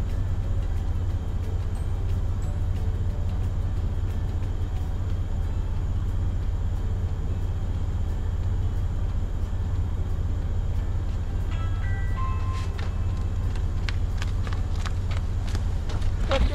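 Car engine idling, a steady low rumble heard from inside the cabin, with a few short tones and clicks in the last few seconds.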